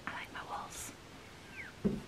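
Soft, breathy whispered voice sounds, then a short low thump near the end.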